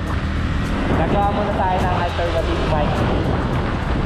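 Steady wind rush on a GoPro's built-in microphone while a Yamaha R15 v3 is ridden, with the bike's 155 cc single-cylinder engine running under it. A faint voice comes through in the middle.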